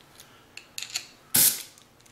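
Metal air-hose quick-connect coupler being pushed onto the air plug of a homemade pen spray gun: a few faint small metal clicks, then one short, sharp snap about a second and a half in as it seats.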